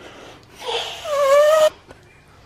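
A hard blow of breath through a small hole in a boiled egg's shell, forcing air under the shell to loosen it: a rush of air with a whining, slightly rising tone over it, starting about half a second in and cutting off suddenly after about a second.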